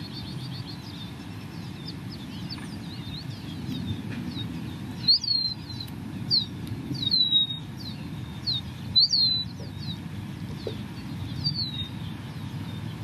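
Small birds chirping: a faint run of quick chirps, then louder single down-slurred chirps every second or so from about five seconds in, over a steady low background rumble.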